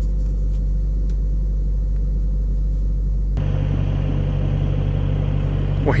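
Freightliner semi truck's diesel engine idling steadily, heard from inside the cab. About three and a half seconds in, the sound changes abruptly and becomes brighter and hissier.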